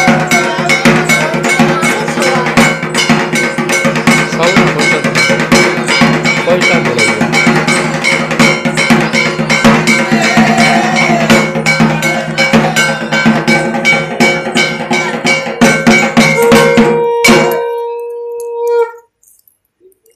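Fast metallic percussion: bells struck several times a second, their tones ringing on under the strikes. It stops abruptly about 17 s in, leaving a sustained tone that fades away by about 19 s.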